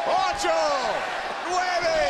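Men's voices shouting out the count of a wrestler's giant-swing rotations, calling "nine" shortly after the start, with more shouted counting following.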